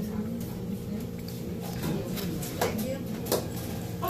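Close-up chewing and mouth sounds of a person eating, with a few sharp clicks of a metal fork against a foil-lined foam takeout container, over a steady low hum.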